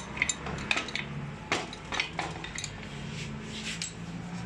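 Metal hand tools and parts clinking and knocking against one another on a workbench: a string of sharp clinks at irregular intervals.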